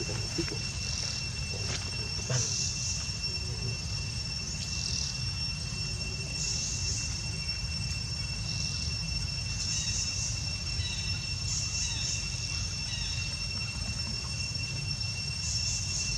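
Insects droning outdoors: a steady high whine with recurring bursts of higher buzzing every second or two, over a low steady rumble. A few faint short chirps come about two thirds of the way in.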